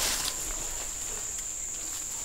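An insect's steady, high-pitched trill, held on one unbroken note.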